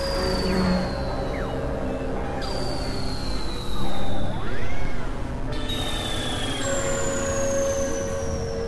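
Experimental electronic drone music from synthesizers: steady held tones under high whistling pitches that slowly slide downward. It swells louder for about a second and a half near the middle.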